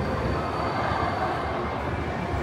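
Steady urban background rumble, like traffic or heavy machinery heard from a distance under a concrete canopy, with a faint thin high tone through much of it.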